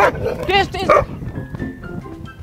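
Rapid, repeated barking from the prank's fake dog, stopping about a second in. Background music with held notes follows.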